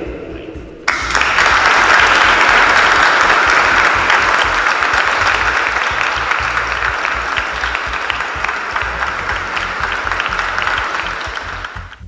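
Congregation applauding: dense clapping that starts suddenly about a second in and slowly dies down toward the end.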